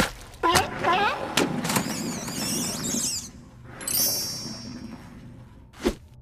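Wordless cartoon character vocalizations: squeals and gliding voice sounds, with a high squeak about four seconds in. A sharp hit comes at the start and another just before the end.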